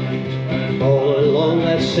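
A man singing an Irish folk ballad to his own acoustic guitar strumming, played live through a PA.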